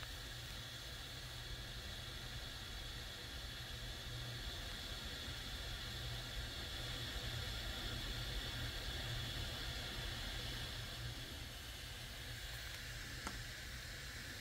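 Steady fan hiss over a low hum, swelling slightly in the middle, with a faint click near the end.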